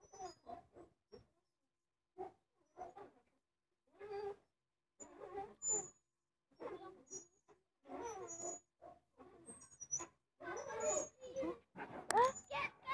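Playground swing hangers squeaking faintly as two swings go back and forth, a short squeal with a bending pitch roughly every second, coming more often in the second half.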